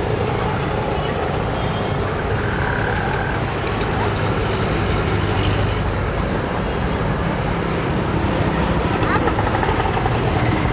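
Steady road traffic noise, with indistinct voices mixed in.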